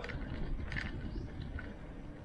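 Low rumble of wind on the microphone and tyre noise from a bike rolling along a concrete road, with a few faint ticks.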